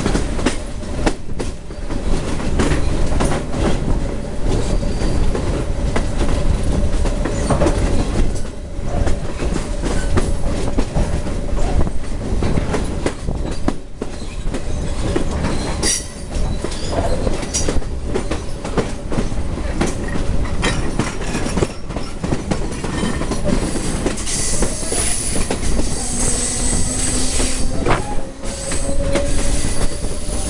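SuperVia commuter train running at speed, heard from an open window: a steady rumble of wheels on rail with frequent clacks. A thin, high wheel squeal comes in over the last few seconds.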